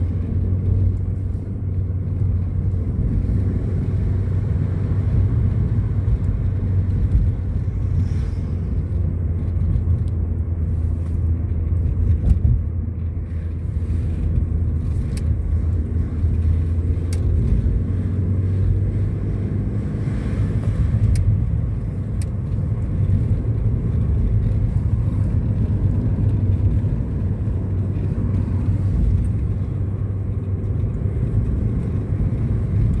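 Steady in-cabin rumble of a car driving along a road: engine and tyre noise heard from inside the car, with a few faint clicks midway.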